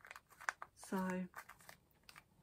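Small plastic jar of night cream being handled and its lid put back on: a few short clicks and scrapes at the start, then fainter clicks near the end.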